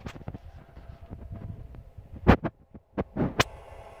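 A run of low thumps and short knocks from the camera being carried and things being handled, with two louder knocks about two seconds in and a sharp click near the end.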